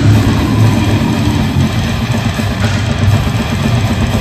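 Death metal band playing live at full volume: heavily distorted electric guitars and bass with fast, dense drumming, all in one unbroken wall of sound.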